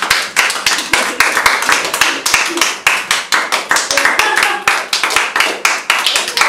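A small group of people clapping, many quick, uneven hand claps with a few voices mixed in.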